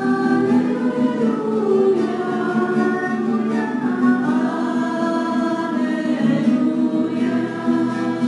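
Church choir singing a slow liturgical chant in long held notes, with acoustic guitar accompaniment: the sung acclamation between the reading and the Gospel at Mass.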